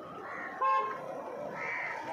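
A crow cawing twice, about a second apart, with a brief vehicle horn toot between the caws; the toot is the loudest sound.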